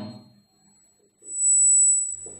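A thin, high-pitched steady whine, held for almost a second from a little past a second in; it is the loudest sound here, and a faint trace of the same tone runs underneath throughout.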